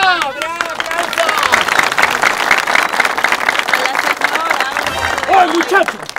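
Studio audience applauding, many hands clapping at once, with a voice calling out at the start and again near the end.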